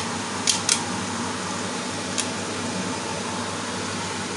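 Plastic DVDs clicking against one another and the frying pan as a stack is set down in water, with four short, sharp clicks, the last about two seconds in, over a steady background hum.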